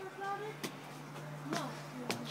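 A quiet voice speaks briefly at the start, over a low steady hum, with a couple of soft clicks.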